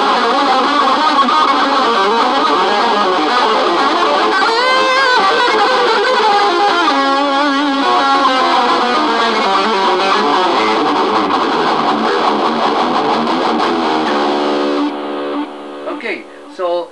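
Electric guitar played as a fast, continuous run of notes, with wavering, bent notes about five seconds in and again around eight seconds. Near the end it settles on one held note that rings on more quietly.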